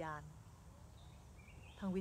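A woman speaking Thai, pausing for about a second and a half over a low background hum; late in the pause a faint bird chirp rises in pitch.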